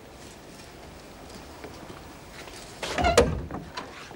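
Quiet room tone, then a door opened with a loud clunk about three seconds in, carrying a brief pitched squeak or ring.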